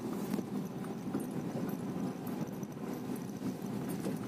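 Car tyres rolling slowly over a rough, stony dirt road, heard from inside the cabin: a steady rumble dotted with small irregular knocks and crunches from the gravel.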